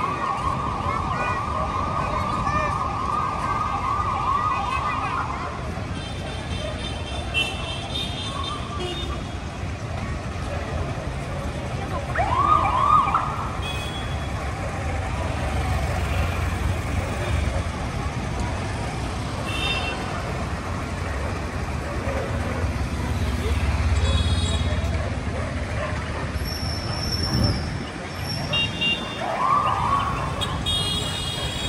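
Busy night-time street traffic with a siren that sweeps up and holds a high wavering tone for about five seconds. It comes back in short rising whoops about twelve seconds in and again near the end, over the steady rumble of motorbikes and scooters, which swells in the middle.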